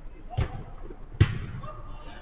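A football struck twice on an artificial-turf pitch: two sharp thuds less than a second apart, the second louder. Players' voices are faint behind.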